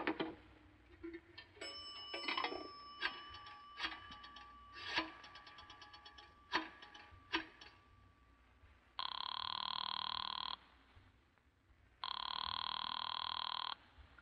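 Telephone sound effect from an old radio drama: a call being dialed, a run of clicks over a faint steady tone, then a telephone bell ringing twice, each ring about a second and a half long and the loudest sounds here.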